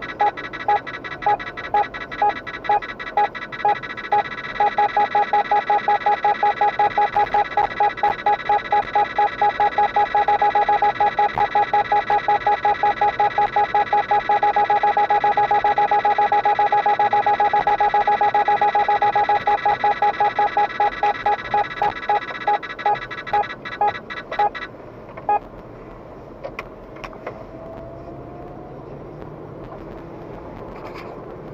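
Protector 950 radar detector alerting to a Ramer police speed radar: a loud beep that repeats faster and faster until it is almost continuous, then slows again and stops about 25 seconds in. After that only the car's low road noise is left.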